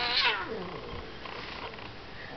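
A domestic cat yowling in protest, one drawn-out call that glides down in pitch over about the first second and then fades out.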